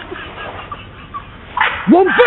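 A man laughing uncontrollably: quieter wheezing at first, then loud high-pitched hooting laughs that swoop up and down in pitch from near the end.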